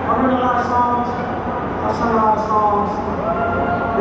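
A man's voice talking to the audience through a concert's sound system, between songs.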